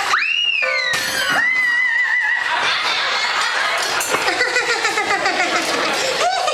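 A high, whistle-like whoop that swoops up and slides down, followed by a second one that rises and holds with a wobble, as a comic effect in a live stage show. From about halfway, a crowd's chatter and laughter take over.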